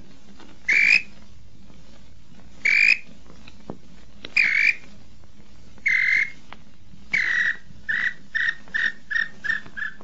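Inhambu-xororó (small-billed tinamou) calls. Four single clear whistled notes come a second and a half to two seconds apart. Then, after about seven seconds, a longer note is followed by a quickening run of about eight short notes.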